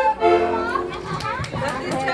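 A heligónka (diatonic button accordion) holds its final chord, which fades away within the first second. Children's and adults' voices chatter over it, with a few sharp claps in the second half.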